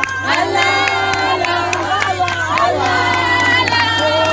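A crowd singing and cheering in many voices at once, with a steady beat of hand claps.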